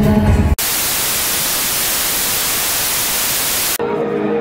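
Live concert music cuts off abruptly about half a second in, replaced by a loud, steady hiss of white-noise static that holds for about three seconds and stops just as sharply near the end, where other music begins.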